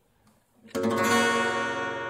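Acoustic guitar begins strumming a chord about three-quarters of a second in, and the chord rings on with many notes sounding together.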